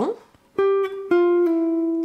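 Hollow-body archtop electric guitar playing single picked notes that step downward, the last one ringing on. They are notes of a descending D Locrian line that includes the ninth, a note outside the scale.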